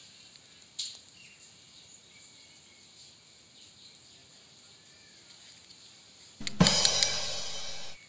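Faint room tone with a single light click about a second in. Near the end comes a loud drum hit with a crashing cymbal, a musical sound effect that rings for about a second and a half and then cuts off suddenly.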